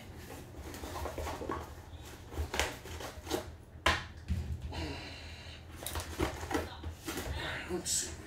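Low, indistinct voices in a small room, with scattered light clicks and knocks, the sharpest about four seconds in.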